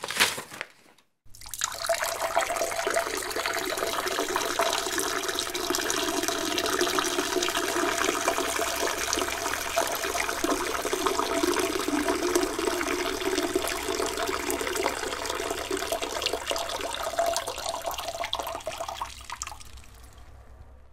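A man urinating into a toilet bowl: a steady splashing stream that starts about a second in and tails off near the end. At the very start, the last tear of paper from a letter being opened.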